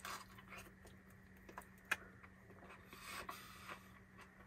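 Faint chewing of a bite of thin-crust homemade pizza, with soft crunches and scattered mouth clicks, one sharper click a little under two seconds in. A steady low hum runs underneath.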